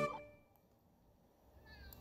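Near silence: room tone, after a short voiced sound that cuts off in the first quarter second, and a faint, brief rising squeak near the end.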